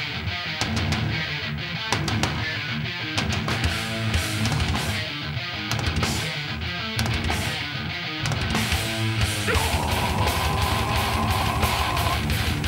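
Heavy metal band playing live: distorted electric guitar and bass riffing over drums. The low end is lighter for the first several seconds, then the full band comes back in heavier about eight and a half seconds in, with a long held high note over it near the end.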